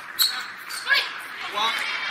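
Table tennis ball clicking off the bats and table in a doubles rally, a few sharp clicks in the first second. Then voices, as the point ends.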